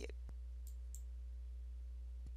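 Low steady hum under a quiet pause, with one faint click about a third of a second in and two small high ticks just before the middle.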